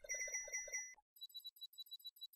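Faint synthesized beeping from the end-card music: a fast ticking run of short, high, alarm-clock-like beeps, about eight a second, alternating with a brief run of about six stronger pulsed tones. The pattern repeats.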